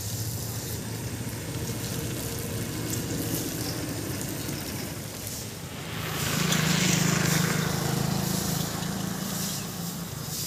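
A motor running with a steady low hum, which grows louder about six seconds in with a hiss over it.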